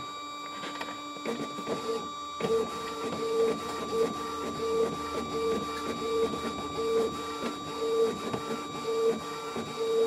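Canon MP470 inkjet all-in-one printer running a copy job: a steady motor whine with a regular whirring pulse about every three-quarters of a second, which starts about a second in and grows louder a little later.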